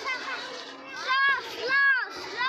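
A young boy's high-pitched voice calling out twice in drawn-out cries that rise and fall in pitch, about a second in and near the end, over faint children's playground noise.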